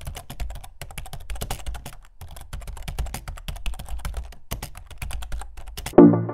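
Rapid, irregular clatter of computer keyboard keys being typed, several clicks a second, with a short pause about two seconds in.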